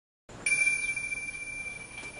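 Opening note of a romantic theme song: a single high bell-like chime struck about half a second in and left ringing, slowly fading away.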